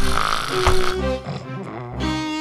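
Cartoon sound effect of knocks on a wooden door, sharp raps in the first second, over background music.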